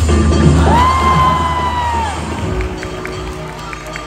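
Upbeat backing music with one long, high shout held for about a second and a half over a taekwondo board-breaking kick. The music drops out about two and a half seconds in, leaving crowd cheering and a few scattered claps.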